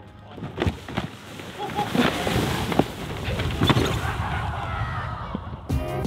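A flattened cardboard TV box used as a sled, scraping and rushing over snow with a person lying on it, with several knocks along the way.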